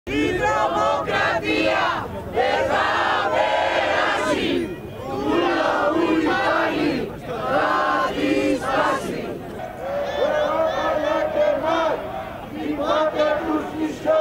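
A crowd of protesters chanting slogans in Greek in unison: loud shouted phrases, one after another, with short breaks between them.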